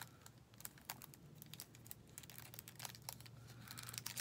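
Faint crinkling and crackling of a small clear plastic baggie being handled and worked open by hand, in short irregular clicks.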